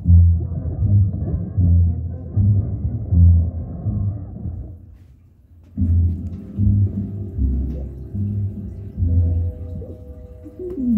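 Bass-heavy music from a cartoon soundtrack played loud through a home subwoofer, deep bass hits about every 0.8 s. The music drops out for about a second around five seconds in, then resumes.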